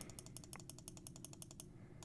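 Faint, rapid clicking of computer keys, about a dozen clicks a second, as repeated presses step a cursor along a graph. The clicking pauses briefly near the end.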